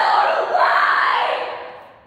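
A long, loud yelling cry, held for over a second and then fading away near the end.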